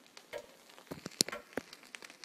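Irregular crackling and sharp clicks over a steady hiss, with the sharpest click about a second in. Beneath them a clock ticks about once a second.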